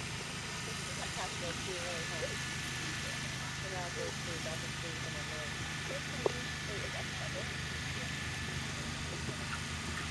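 Horse-show ambience: a steady low hum with faint, indistinct voices in the background, and a single sharp click about six seconds in.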